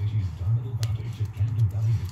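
A radio playing music in the background, its heavy low bass pulsing. Over it, faint squishing of gloved hands kneading grease into a tapered roller bearing, with a sharp click about halfway.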